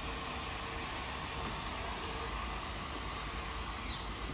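Steady hiss of bottle-gourd pieces frying in an iron kadhai over a wood fire.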